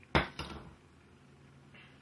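Two sharp knocks about a quarter second apart, the first the louder, with a short fading tail: a bottle of water being set down on a hard surface.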